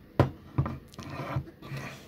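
Handling noise from a car engine control unit's aluminium housing being turned over in the hands. One sharp knock, then light scraping and rubbing.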